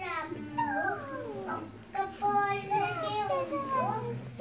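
A young girl's voice reciting into a microphone, her pitch gliding up and down in a sing-song way.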